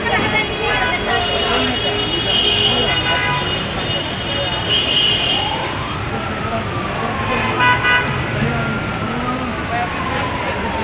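Busy street traffic at a crowded intersection: engines and general road noise with vehicle horns honking several times, people's voices in the background, and a long tone that slowly falls in pitch through the second half.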